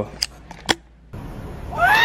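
Two sharp clicks about half a second apart, from a handheld camera being handled as it swings down toward the floor, then a short lull. Near the end a voice-like sound with a rising-then-falling pitch comes in.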